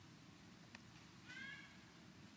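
A baby macaque gives one short, faint, high-pitched cry about a second in, with a brief click just before it.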